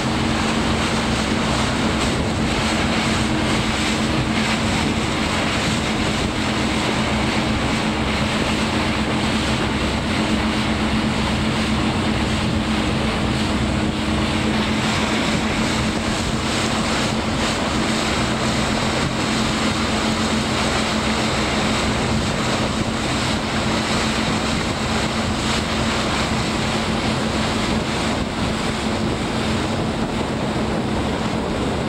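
Motorboat engine running steadily under way, a constant drone, over the rush of the churning wake and water.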